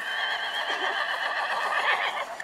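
A horse whinnying: one long call with a quaver in its pitch.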